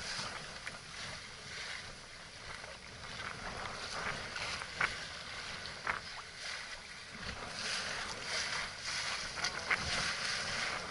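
Wind buffeting the microphone over water splashing and rushing along the hull of a small wooden sailing yacht under way in choppy water, with a few short sharp knocks about five and six seconds in.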